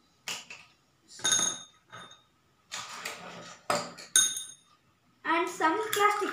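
Glass marbles and a stone dropped into small stainless steel cups of water, about five sharp clinks, each with a brief metallic ring.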